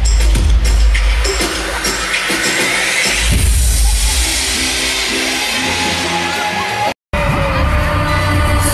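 Loud live pop music through an arena PA, with a heavy bass beat, and a crowd cheering over it a few seconds in. The sound cuts out for an instant near the end, then live singing with a band comes in.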